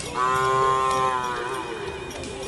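A bull mooing once, one long, steady call lasting about a second and a half that dips slightly in pitch as it ends.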